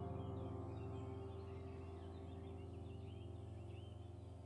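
Soft background music: held electric-piano chords slowly fading out, with birds chirping over them.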